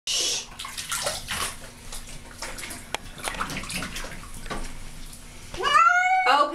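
Water splashing and sloshing in a bathtub as a cat is washed by hand, then near the end a cat's yowl that rises in pitch.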